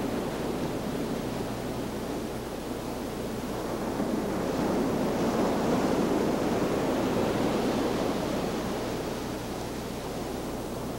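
Ocean surf: a steady wash of breaking waves that swells about halfway through and then eases, over a steady low hum.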